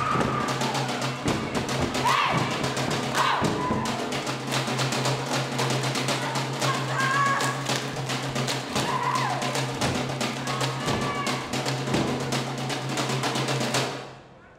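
Samoan dance music: fast, dense drumming, with high voices calling out in short whoops that glide up and down several times above it. The sound cuts off suddenly at the end.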